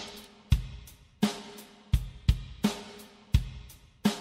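Drum kit playing alone at the start of a recorded song: a sparse beat of separate kick, snare and cymbal hits, each ringing out, with no other instruments yet.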